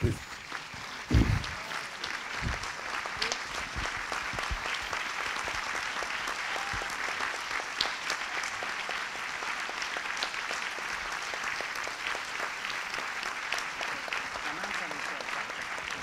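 Audience applauding steadily, many hands clapping together, with a brief low thump about a second in.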